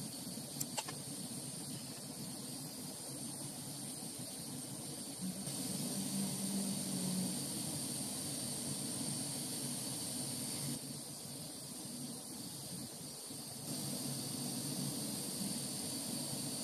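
Lampworking gas torch running with a steady hiss of the flame while a glass rod is heated in it, the level shifting a few times. Two small clicks come about half a second in.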